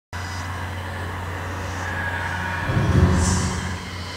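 Horror-film soundtrack drone: a steady low hum with hiss that starts abruptly, then swells into a louder, deeper rumble about three seconds in before easing off.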